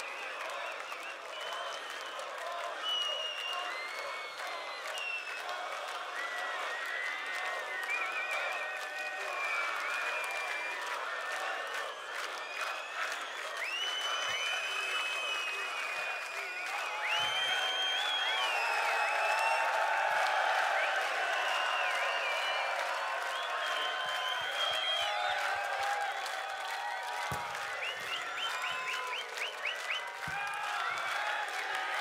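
Large open-air festival crowd applauding and cheering between songs, with scattered shouts over the clapping; it grows louder about halfway through.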